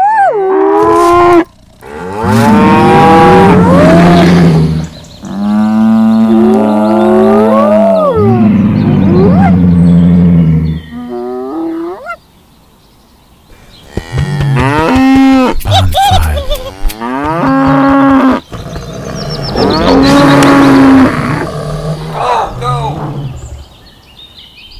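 Cattle mooing: a series of long, drawn-out calls with short breaks between, pausing for about two seconds midway.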